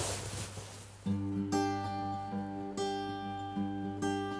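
Acoustic guitar, a Tanglewood, starting to play about a second in: a few chords, each left to ring, the opening of a song.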